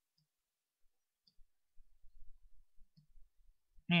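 Faint, scattered clicks and soft low knocks at a desk, starting about a second and a half in, while a stroke is painted in a drawing program.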